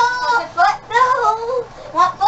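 A child's high-pitched voice in several short, wordless sing-song calls, the pitch rising and falling.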